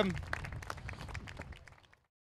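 Small audience applauding, the clapping fading away and cutting to silence near the end.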